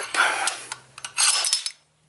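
Steel slide hammer bearing puller being worked in two strokes, the weight scraping along the shaft and clanking against its stop, pulling a bearing out of an aluminium engine case. The second stroke ends with a brief metallic ring.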